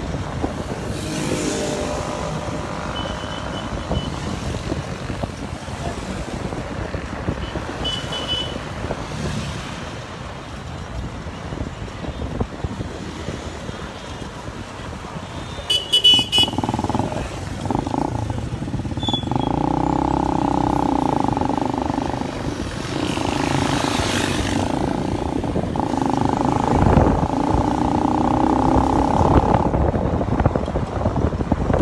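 Street traffic heard from a moving motorcycle: engine and road noise with other motorbikes and cars around. A sharp clatter comes about halfway through, and the sound grows louder and steadier in the second half.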